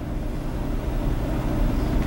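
Room tone: a steady low rumble with no distinct events.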